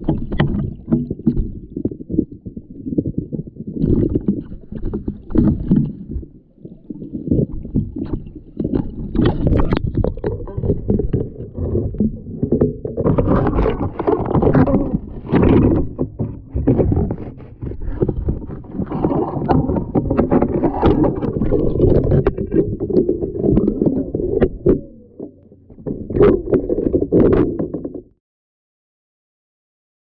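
Loud, muffled water sloshing and churning with frequent small knocks, picked up by an action camera's microphone held underwater in a shallow creek.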